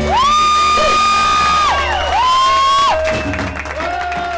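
Live rockabilly band playing the closing held notes of a ballad: long sustained melody notes that slide up into pitch and fall away, over a steady held bass, dying down in the last second.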